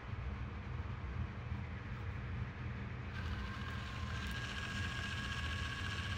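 Electric motor of a YoLink smart water-valve actuator starts about three seconds in with a steady whine, turning the main water shutoff valve toward closed. A low steady hum runs underneath.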